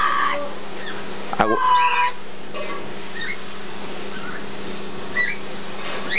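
Pet green parrot making small short chirps and whistles. About a second and a half in, a sharp knock is followed by a brief call from the parrot. A steady low hum runs underneath.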